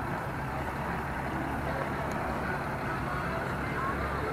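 Steady low rumble of wind buffeting the microphone outdoors, with no distinct event.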